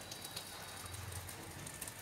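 Light rain falling, a soft, even hiss with faint scattered drop sounds.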